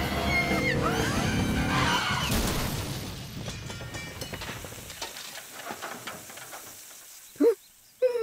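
Cartoon soundtrack of music with two characters screaming, cut short about two seconds in by a van crash with breaking glass. The crash fades away over the next few seconds, and a short vocal grunt comes near the end.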